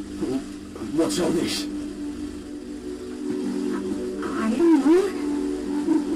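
A steady low droning hum, with short wordless voice-like sounds rising and falling over it about a second in and again near the end.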